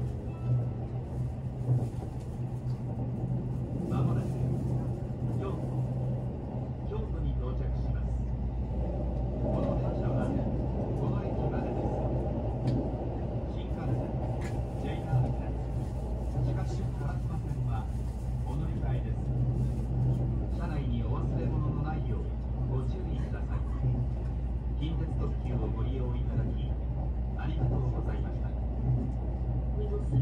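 Cabin running noise of a Kintetsu 22600 series Ace limited express train under way: a steady hum and the rumble of wheels on rail, with light ticks throughout. A deeper rumble joins about seven seconds in, and a voice is heard over it.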